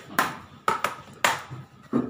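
Makeup palette and brush being handled: a string of five sharp taps at uneven intervals, like a brush knocked against a hard plastic case.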